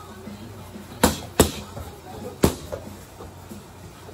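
Three gloved strikes smacking into hand-held pads: two in quick succession about a second in, then a third a second later.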